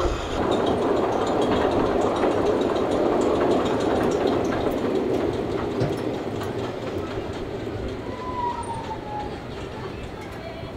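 A Meisho Gold Rush roller coaster train rolling along its steel track, a steady rumble that slowly fades as the train moves away. A short, slightly falling whistle sounds about eight seconds in.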